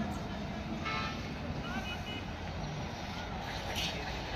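Outdoor market background: a steady low rumble with faint, indistinct voices, and a short horn-like toot about a second in.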